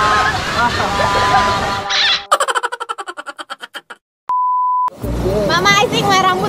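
Voices and music over rushing river water, cut off by a fast run of clicks that quickly fade away. After a moment of dead silence comes one steady electronic beep of about half a second, then voices again.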